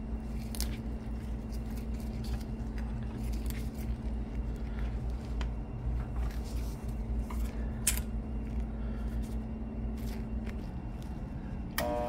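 Steady low hum with a few faint, sharp metal clicks from a bench vise as a copper pipe is clamped and squeezed flat at one end.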